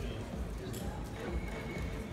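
Indistinct voices and background music in a large hall, with a single sharp click about a third of the way in.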